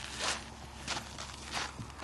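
Three footsteps crunching on sandy, gritty ground, one about every two-thirds of a second.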